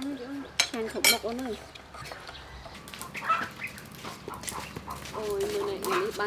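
Spoons and dishes clinking a few times while people eat at a table, against a background of voices.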